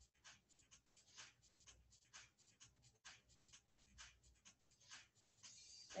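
Near silence, broken by faint, irregular scratchy ticks, a few a second.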